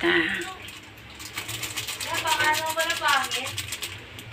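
A run of rapid light clicks and ticks while ground pepper is shaken from a packet over fish in a stainless steel pot, with a voice heard briefly over them in the middle.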